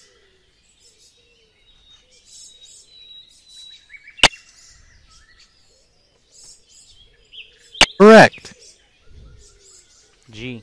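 Faint bird chirping running under a quiz program, with a sharp click about four seconds in and another just before eight seconds. Right after the second click comes a short, loud pitched sound, the loudest thing heard.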